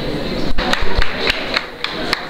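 Several sharp, irregularly spaced knocks and thumps, most of them between about half a second and two seconds in, over steady room noise.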